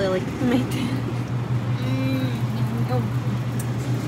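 Warehouse store ambience: a steady low hum with faint, indistinct voices of other shoppers.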